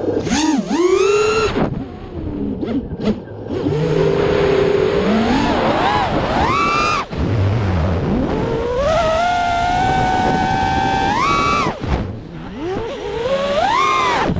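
FPV freestyle quadcopter's brushless motors and propellers whining as it flies. The pitch swoops up and down with each throttle punch, holds fairly steady for a few seconds in the second half, drops away sharply at about twelve seconds, then climbs again near the end.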